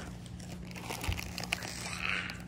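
Faint crinkling and rustling with a few light ticks, swelling into a brighter rustle near the end.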